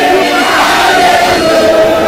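A large crowd of voices crying out and chanting together, many held notes overlapping.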